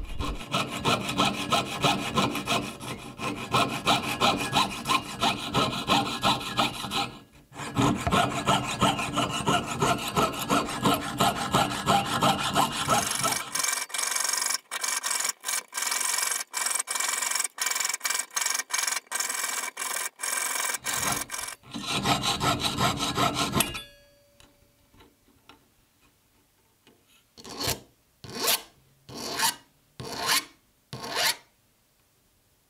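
Jeweler's saw cutting through a silver back plate in quick, even strokes, with a short pause about seven seconds in. The sawing stops about 24 seconds in, and near the end a flat hand file is drawn across the metal edge in slower single strokes, a little under one a second.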